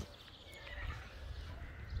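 Faint outdoor background: an uneven low rumble that swells slightly, with a brief faint high chirp about half a second in.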